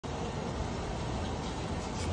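Steady background noise: a low hum under an even hiss.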